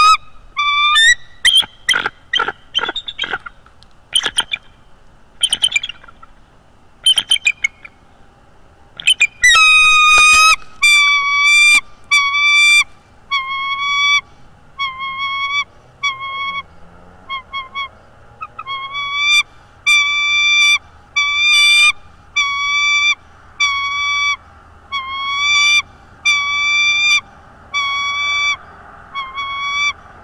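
Bald eagle calling repeatedly: scattered high notes at first, then from about a third of the way in a steady series of whining, slightly inflected notes, a little more than one a second.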